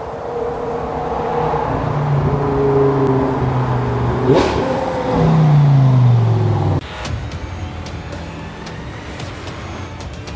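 Lamborghini Gallardo LP550-2's V10 engine accelerating hard toward the camera, with a short crack about four seconds in; its pitch then falls as the car draws close and is loudest. The engine sound cuts off abruptly about seven seconds in, giving way to quieter ticking.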